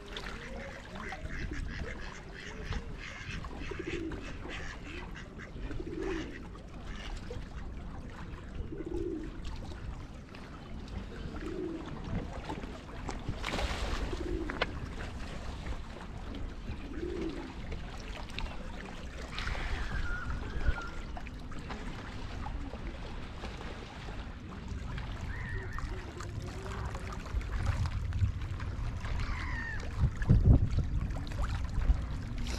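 Ducks on a lake quacking: a short low call repeated about every two to three seconds through the first half, then a few higher calls, over steady background noise.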